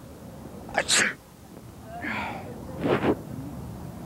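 A man forcing a sneeze on cue close to a handheld microphone: a sharp burst of breath about a second in, and another near the end.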